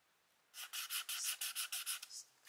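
Felt-tip marker scribbling quickly back and forth on paper, about eight short scratchy strokes a second, starting about half a second in.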